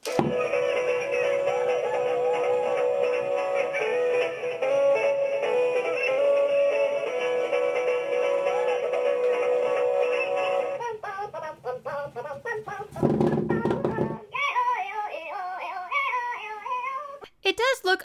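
Spinnin' Bob Minion spinning-top toy playing its electronic song with synthetic Minion singing while it spins. About eleven seconds in, the steady backing music gives way to a wavering sung voice, with a brief low rumble around thirteen seconds.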